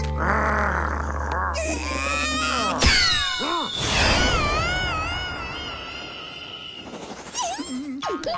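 Cartoon vocal sound effects: a rough grunting sound over a low music drone, a sharp hit just before three seconds in, then a long wavering scream from the cartoon lizard as it is flung through the air, fading away.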